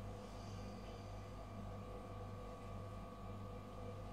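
Quiet room tone with a steady low electrical hum.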